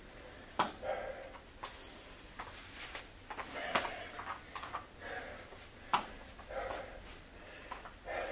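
Light footsteps and shoe scuffs on a wooden floor as a person moves and squats, with a handful of short sharp taps scattered through.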